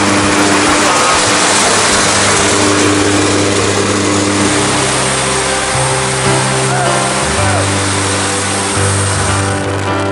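Steady rush of wind and drone of aircraft engines in a jump plane's cabin with the door open, under background music with a slow, stepping bass line.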